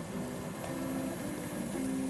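Background music: a line of short, held notes stepping from pitch to pitch every half second or so.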